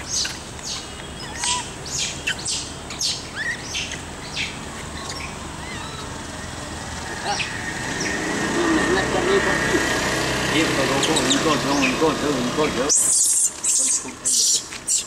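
Outdoor ambience with birds chirping and scattered short clicks and rustles. About eight seconds in a person starts talking for several seconds, and near the end a plastic bag crinkles as it is handled.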